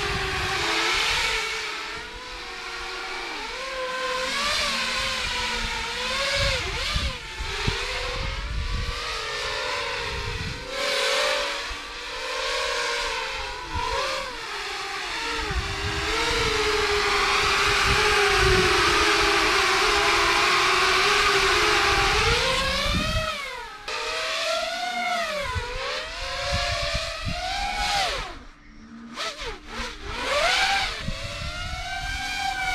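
Ducted quadcopter with 2507 970kv brushless motors spinning six-inch three-blade propellers, whining and buzzing as the throttle is worked, the pitch sweeping up and down with each change. Past the middle it holds loud and steady for several seconds, then swoops up and down again, dipping briefly near the end.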